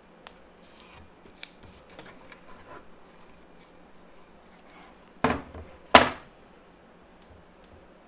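A heavy wooden cutting board being handled, then flipped over and set down on a table saw's metal top: faint rustling and small clicks, then two loud thuds about a second apart, the second sharper and louder.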